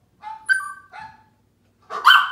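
A small Brussels Griffon terrier mix dog vocalising in a few short, high yips and whines, with a louder, sharper bark at the end.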